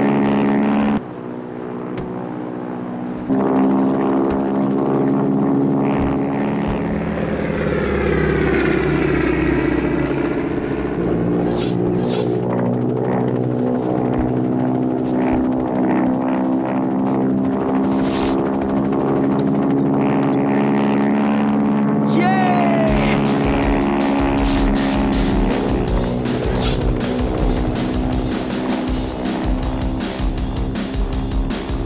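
Film background music mixed with the drone of a twin-engine propeller plane in flight, with a sweep that falls in pitch about eight seconds in and a few sharp hits near twelve and eighteen seconds. A steady rhythmic beat comes in at about twenty-three seconds.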